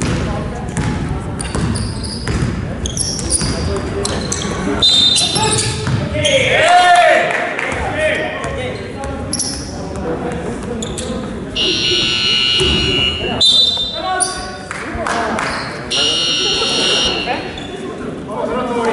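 A basketball bouncing on a gym's wooden floor amid players' voices. Twice in the second half, an electronic game buzzer sounds for about a second and a half each time.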